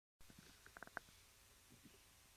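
Near silence with a few faint clicks just before a second in, the last one the loudest.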